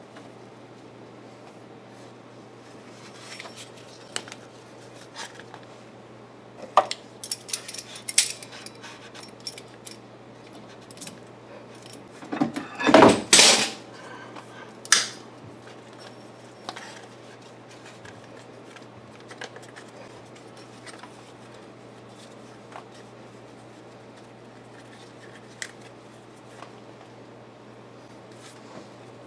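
Scattered metallic clinks and rattles of hands and parts being handled in a car's engine bay, over a steady low hum. About halfway through there is one louder clatter lasting about a second and a half, followed by a single sharp click.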